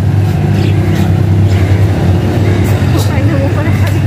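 Outdoor market street ambience: a motor vehicle engine running steadily close by, a constant low hum, with indistinct voices of people in the background.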